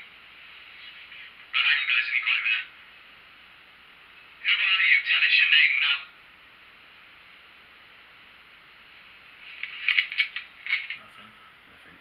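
Three short bursts of thin, tinny voice sound from a small device speaker, a couple of seconds apart, with faint hiss between: an EVP recording being played back and listened to.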